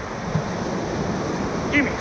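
Whitewater rapids rushing steadily around the raft, a continuous noisy churn of fast river water.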